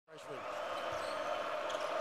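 Basketball dribbled on a hardwood court, a few bounces, over the steady hum of an arena crowd.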